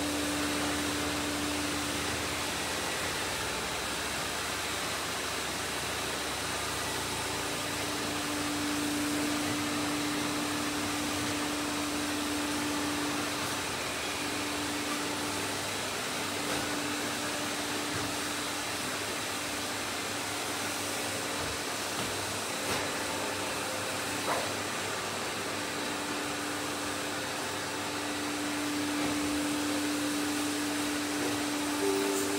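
Robot vacuum cleaners running: a steady whirring suction noise with a humming tone that fades in and out, and a couple of light clicks about three-quarters of the way through.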